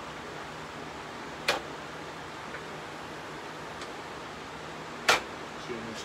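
Two sharp clicks about three and a half seconds apart, the second louder, from the Hercules 12-inch sliding compound miter saw's turntable being swung and snapping into its preset miter detent stops.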